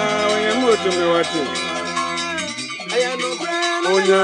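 Ghanaian gospel song playing, with held and sliding melodic tones. The low bass line drops out a little past halfway.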